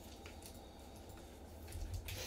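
Faint handling of a trading card by gloved hands over a low, steady room rumble, with a few soft ticks near the end as the card is moved.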